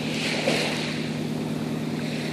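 Steady beach ambience: an even wash of surf and wind on the microphone, with a constant low hum underneath.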